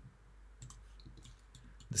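Several faint, separate clicks of a computer pointing device being clicked while points are picked on screen.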